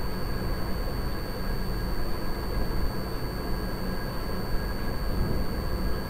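Steady background noise with a faint constant high-pitched whine, unchanging throughout; no speech.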